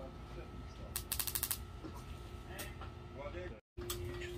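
A quick run of sharp, rapid clicks about a second in, lasting about half a second: the electronic spark igniter of a propane fire-pit table trying to light the burner.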